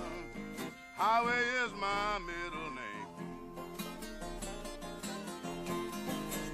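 Acoustic blues break: a harmonica playing long, bending notes over a strummed acoustic guitar. The harmonica is strongest in the first half, and the guitar's chords carry on through the rest.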